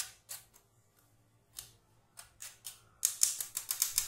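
A metal spoon scraping and tapping gram flour through a stainless steel mesh sieve in short strokes, a few a second, with a pause about a second in. About three seconds in, a louder, quicker run of rattling strokes begins.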